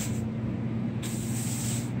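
Straw broom sweeping a concrete floor: the bristles make a soft hiss, strongest in the second half, over a steady low hum.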